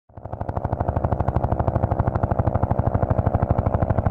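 Synthesized intro sound effect under a news logo animation: a rapid, even pulsing, about thirteen beats a second, with a low hum and a mid-pitched tone. It fades in at the very start and then holds steady.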